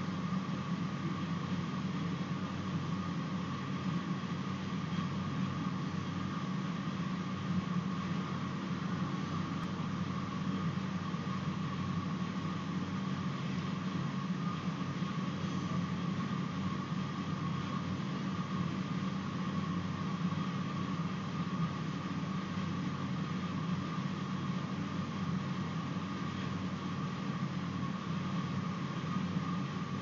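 Steady background hum and hiss, with a low drone and a fainter higher steady tone, unchanging and with no other sound.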